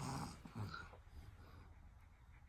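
A baby's short, breathy grunt right at the start, followed by a smaller one about half a second later, then quiet.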